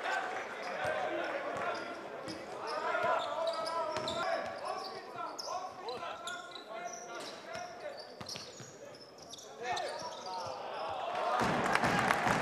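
Game sound from an indoor basketball arena: a basketball bouncing on the hardwood court, with sharp knocks and voices calling out in the echoing hall. About a second before the end the sound turns suddenly louder and denser.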